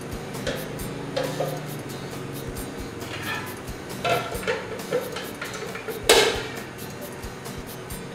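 Kitchen juicer and blender parts being handled: scattered clicks and knocks of plastic and glass, with one loud sharp knock about six seconds in.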